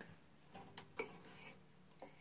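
Near silence with two faint clicks about a second in: a crank string winder being fitted over a guitar's tuning machine.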